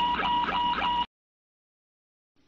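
Boeing 747-400 caution beeper sounding: a quick run of electronic beeps, about four a second, that stops suddenly about a second in. It is the aural alert for a caution-level fault, here the loss of hydraulic system pressure.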